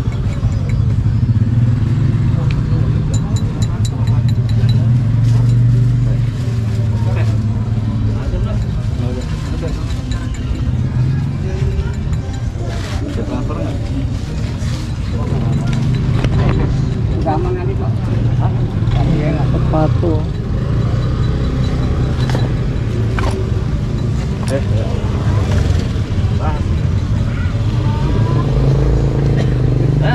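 Busy outdoor market ambience: a steady low rumble of motor vehicles running, with voices in the background and occasional small clicks and knocks.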